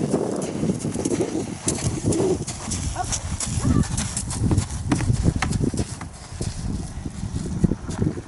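A horse's hooves and a person's footsteps crunching irregularly on a sand-and-gravel arena as they walk close past.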